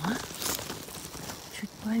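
Grass and leaves rustling and crackling as they are brushed aside close to the microphone, with the loudest rustle about half a second in. A short voiced exclamation comes near the end.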